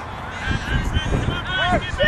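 Children and spectators shouting and calling across a playing field: short, high-pitched rising-and-falling cries, several overlapping, over a low rumble.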